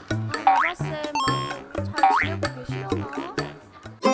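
Playful comedy background music with a bouncy repeating bass line and light percussion, with two cartoon 'boing' sound effects, rising in pitch, about half a second and about two seconds in.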